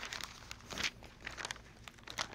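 Bible pages rustling as they are leafed through: a string of short, irregular crinkles with a few light taps.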